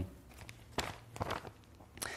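A few faint footsteps and scuffs on the floor, a person shifting their feet.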